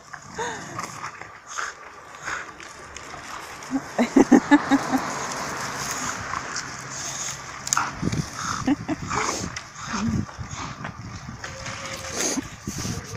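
Leafy branch rustling and twigs cracking as a dog drags and worries a large stick through the grass, with a brief run of dog growling about four seconds in.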